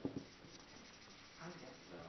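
Dry-erase marker writing on a whiteboard: faint strokes, with a couple of short taps at the start.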